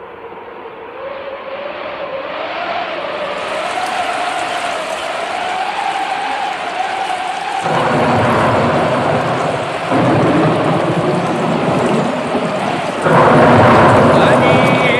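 Rain and thunder opening a recorded song, building up and growing louder in steps about eight, ten and thirteen seconds in.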